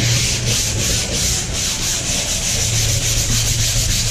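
220-grit sandpaper on a hand-held sanding pad rubbed back and forth in quick, even strokes over a gessoed stretched canvas, scuffing off the factory primer to smooth the surface.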